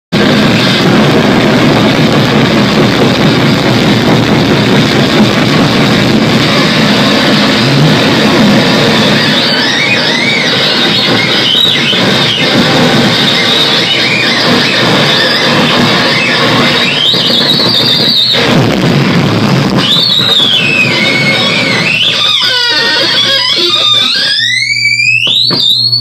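Harsh noise played live on a table of effects pedals and electronics: a loud, dense wall of distorted noise. From about a third of the way in, squealing pitch sweeps rise and fall over it, and near the end a whine climbs steeply.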